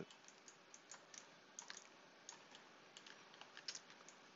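Near silence with faint, irregular clicks from a computer keyboard and mouse, about a dozen over the few seconds.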